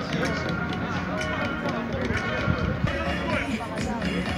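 Several people talking and calling out, mixed with music playing in the background.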